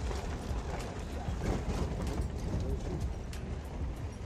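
Rumbling road and wind noise from a pickup truck driving over rough desert ground, with wind buffeting the microphone and scattered small knocks and rattles.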